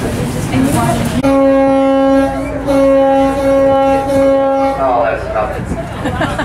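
Boat horn sounding two blasts on one steady tone, a short one about a second in and then a longer one of about two and a half seconds, signalling the boat's departure from the dock.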